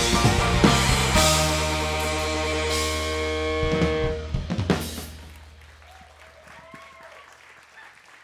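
A live rock band with drum kit, electric guitar and keyboard ends a song. The drums play for about a second, then a held chord rings for a few seconds. Final drum and cymbal hits come around four to five seconds in, and then the sound dies away.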